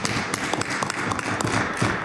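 Many legislators applauding by thumping and tapping on their wooden desks, a dense rapid patter that fades near the end as a member rises to speak.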